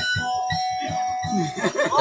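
Kutiyapi (Maranao boat lute) plucked in a steady rhythm of about five strokes a second under a held, ringing higher note. About a second and a half in, lively voices and laughter break in over it.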